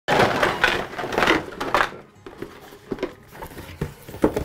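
A cardboard shipping box scraping and rustling as it is lifted off a stack of auger bits packed in clear plastic tubes, loudest in the first two seconds. A few light clicks of the plastic tubes knocking together follow.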